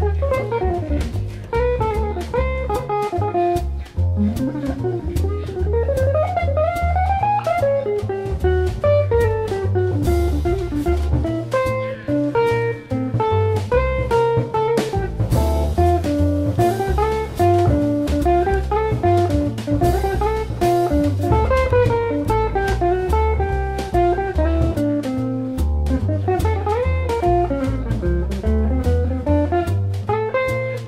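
Small jazz group playing: a guitar plays quick melodic runs that climb and fall, over double bass and a drum kit with cymbals.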